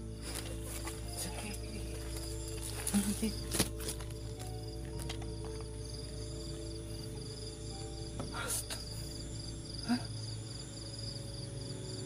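A sustained, low ambient music drone over the steady high chirping of crickets, with a few brief sharp clicks and rustles a few seconds in and again past the middle.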